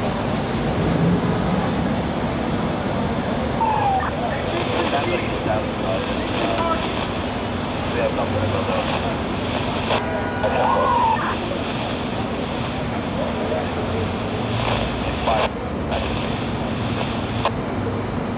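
Steady road traffic noise with indistinct voices around it, and a brief tone, like a horn, about ten seconds in.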